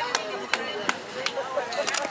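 Background voices talking, with several sharp, irregular clicks or knocks.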